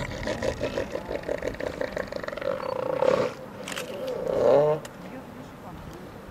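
Southern elephant seals calling: a long, rapidly pulsing call lasting about three seconds, then a shorter, louder call about four and a half seconds in.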